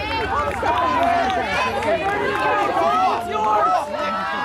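Several people talking at once close by, overlapping conversation with no single voice clear.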